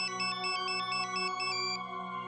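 A mobile phone ringtone: a quick melody of high electronic beeps that stops shortly before the end, over steady held background music.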